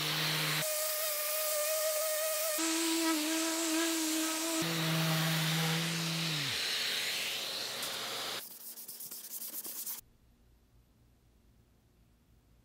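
Random orbit sander with a dust-extraction vacuum running on a wood panel, sanding off cured epoxy squeeze-out: a steady motor whine over a rushing hiss that shifts pitch abruptly several times. It drops off about eight and a half seconds in and gives way to near silence for the last two seconds.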